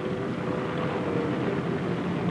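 Steady drone of twin-engine transport planes' piston engines running, with a faint steady hum in it.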